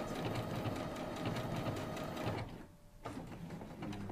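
Domestic sewing machine stitching a buttonhole stitch around a fabric appliqué, a steady rapid clatter of the needle. It stops briefly about two and a half seconds in, then runs again more quietly.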